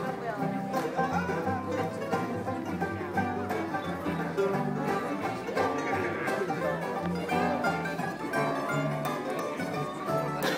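Bluegrass string band playing acoustically, with acoustic guitar and upright bass under picked string melody, and crowd voices close around.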